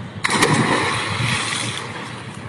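A person plunging into a swimming pool: one sudden splash about a quarter of a second in, followed by churning water that slowly dies down.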